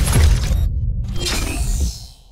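Electronic intro sting for a podcast logo: a deep, low hit with dense sound-effect layers, then a second swell about a second in with a bright high shimmer, fading out near the end.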